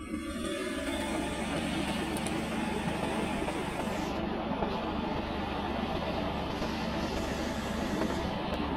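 Steady drone of a moving road vehicle's engine with road and wind noise, heard from aboard the vehicle as it drives along.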